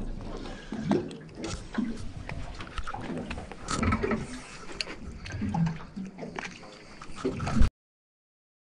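Wet squelching and irregular clicks and knocks of a fish being unhooked by hand in a landing net, with a few short sounds that may be voices. The sound stops abruptly near the end.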